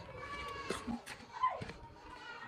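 A faint meow-like animal call, with a pitched cry early on and a call falling in pitch about one and a half seconds in, among a few light clicks.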